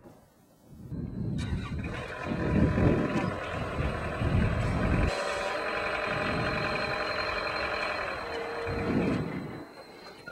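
Geoprobe direct-push rig running, its engine and hydraulics working as the probe head is brought down to put light pressure on the CPT rod string. The noise comes in about a second in, swells twice in the first half, and a short steady whine sounds near the end before it fades.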